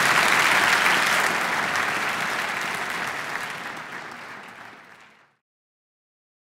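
Audience applauding, the clapping steady at first and then fading out gradually until it is gone about five seconds in.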